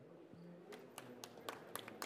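Sparse applause from a few people, separate hand claps starting about a second in and going on irregularly a few times a second.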